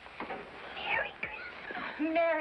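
A person whispering: a few soft, unvoiced words.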